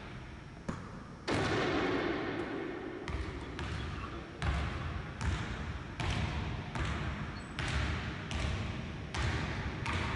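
Basketball being dribbled slowly on a hardwood gym floor, about one bounce every three-quarters of a second, each bounce echoing in the large hall. A louder thud a little over a second in.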